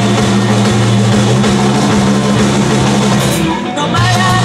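Rock band playing live, heard from within the crowd: drums and guitars in a passage without singing, with a short drop-out near the end before the full band comes back in.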